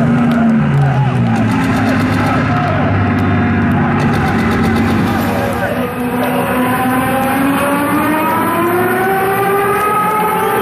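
Large arena crowd cheering and shouting in the dark between songs, many voices overlapping. Long held voices swell upward over the last few seconds.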